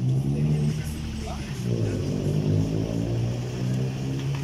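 Motor vehicle engine running close by at low speed, a steady low hum that drops slightly in pitch a little under halfway through.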